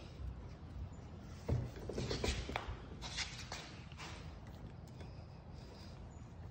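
Faint scattered clicks and light knocks from a metal kayak transducer mount being handled by hand: its knobs are loosened and the arm is moved. The knocks come mostly in the first half.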